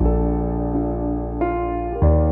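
Slow, soft piano music: a chord struck at the start and held over a deep sustained bass, with another note added about one and a half seconds in.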